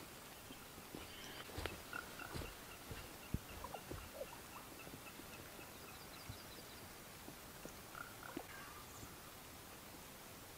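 Faint soft thumps and rustles of hands working loose garden soil and setting seed potatoes into it, strongest in the first few seconds. Behind them a high, even trill of about five short notes a second runs for several seconds, like a small bird calling.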